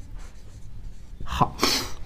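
A man's short, sharp breath in, about a second and a half in, preceded by a small mouth click.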